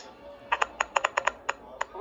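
A quick, uneven run of about ten sharp clicks lasting a second and a half.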